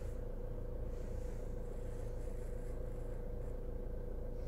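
Steady low rumble and hum inside a car cabin, with one faint steady tone running through it.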